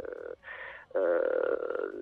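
A man's voice over a telephone line, drawn out in hesitation. He holds an 'aah' briefly, there is a short breathy pause, then he holds a long 'aah' for most of a second before speaking on.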